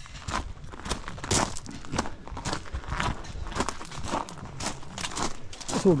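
Footsteps of one person walking over gravel and garden ground, about two steps a second.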